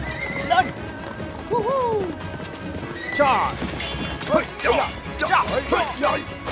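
Horses whinnying several times over a music score, each call sweeping up and then falling in pitch.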